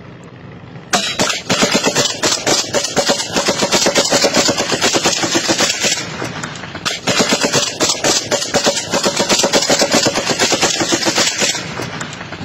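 Sustained automatic gunfire fired close by, rapid shots in two long bursts: the first starts about a second in, there is a brief break around the middle, and the second ends just before the end.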